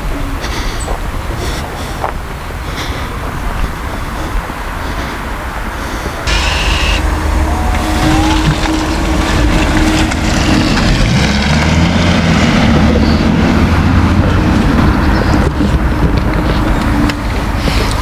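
Mercedes-Benz E 300 de plug-in diesel hybrid saloon pulling away from the kerb and driving off, its engine note rising and falling as it accelerates, over a steady rumble. The sound grows louder about six seconds in.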